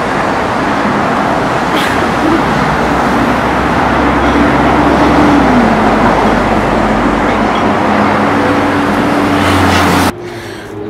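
City road traffic: cars and a city bus driving past, a steady rush of engine and tyre noise with a low rumble. A passing engine's tone drops in pitch about halfway through.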